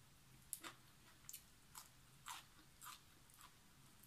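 Faint crunching of a person chewing crisp cucumber salad and raw vegetables, a short crunch about twice a second.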